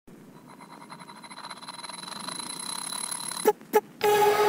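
Channel logo intro sound effect: a fast-pulsing build-up that grows steadily louder over about three seconds, with a thin high tone held above it. It ends in two short sharp hits about a quarter of a second apart.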